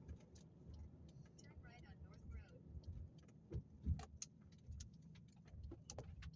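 Faint low rumble of a car driving, heard from inside the cabin, with scattered light clicks throughout.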